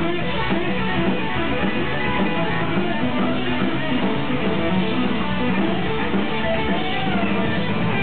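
Punk rock band playing a steady instrumental passage led by strummed electric guitar, with bass underneath.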